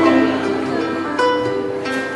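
Live band playing an instrumental passage of a slow song, with plucked acoustic guitar to the fore over keyboard, bass and drums; a new chord is struck a little over a second in.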